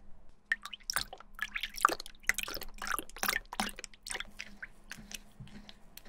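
A bristle brush dipped and swished in a small tub of water and shoe-cleaning shampoo, making quick irregular splashes and drips, busiest in the first few seconds and thinning out toward the end.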